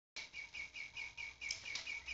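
A bird chirping quickly and repeatedly, about five short chirps a second, over a faint hiss.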